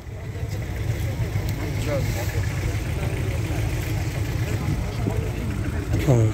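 A car engine idling steadily close by, an even low rumble, with faint voices in the background.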